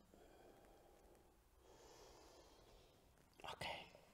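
Near silence: quiet room tone, with a faint breath-like hiss in the middle.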